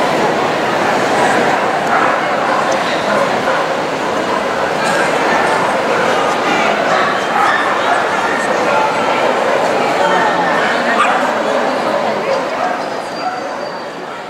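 Dogs barking over the steady chatter of a crowd in a large hall.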